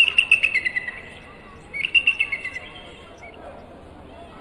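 Bald eagle calls: two runs of high, piping chirps that step down in pitch, one at the start and another about two seconds in.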